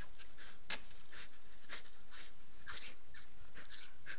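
Wolverine feeding at a hanging bait on a trail camera: a run of irregular short scratching and tearing sounds as it claws at the pole and pulls at the meat, with one sharp click about three quarters of a second in, over a steady hiss.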